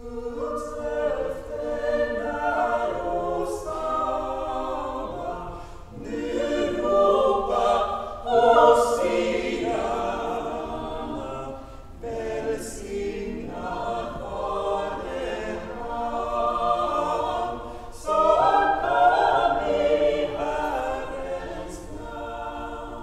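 Girls' choir singing in phrases, with a short break for breath about every six seconds.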